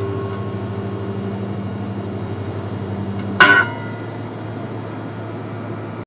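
Steady drone of a car cabin at highway speed, engine and road noise. About three and a half seconds in there is one brief, louder sound with a tone in it.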